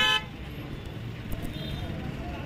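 A vehicle horn gives one short toot right at the start, lasting about a quarter of a second. Street traffic noise follows at a lower, steady level.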